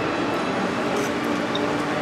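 Steady hiss and crackle of lamb sizzling on a hot serving stone, with a few faint ticks of a knife and fork against the stone.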